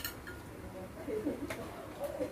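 Light clicks of plastic forks against paper takeout boxes, one at the start and another about a second and a half in. A short, low, wavering sound peaks just over a second in.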